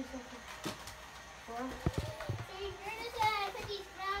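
Children talking. About two seconds in there is a short, sharp knock.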